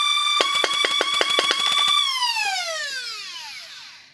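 Flywheel motors of a 3D-printed dual-barrel short-dart Nerf blaster running at speed with a steady high whine. About a dozen rapid solenoid pusher clicks, roughly eight a second, come as it fires. Then the whine falls steadily in pitch as the flywheels spin down.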